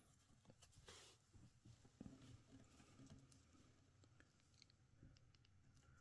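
Near silence, with faint rustling and small clicks from fingers handling a small action figure's cloth robe and hood.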